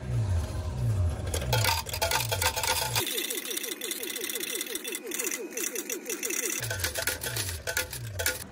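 Slot machine paying out a win in coins: coins clatter steadily into its metal payout tray over the machine's electronic payout tune. The tune is a low falling tone about twice a second, which switches to a faster, higher repeating figure in the middle and then returns.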